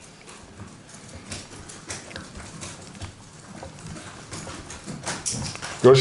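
Scattered light clicks and taps, irregular and several a second, over quiet room noise.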